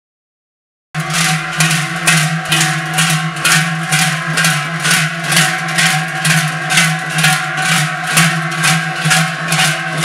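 Large cowbells worn on the backs of joaldun dancers clanging together in a steady marching rhythm, about two and a half strokes a second, with a sustained metallic ring between strokes. The sound starts suddenly about a second in, after silence.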